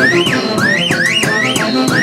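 Andean folk dance music played by a band, with a high melodic phrase that rises and falls over and over, about twice a second, above a steady accompaniment.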